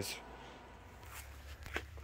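Quiet pause between words: faint room tone with a low steady hum, at the very start the fading end of a spoken word.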